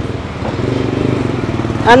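Motorcycle engine running, a fast even pulsing that rises from about half a second in and holds steady.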